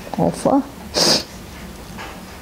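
Speech: a voice slowly saying a couple of words, with a short hiss about a second in.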